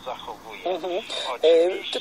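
Speech only: brief words from a radio talk broadcast, with short pauses between them.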